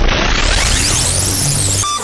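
Loud rushing noise effect that starts suddenly and sweeps upward in pitch over the first second, then holds steady before fading just after the end.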